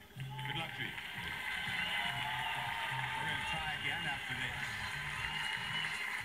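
Studio audience applause and voices, with music underneath.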